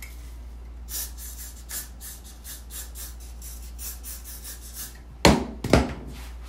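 Handling noises: light rubbing and scratching, then two loud knocks about half a second apart near the end.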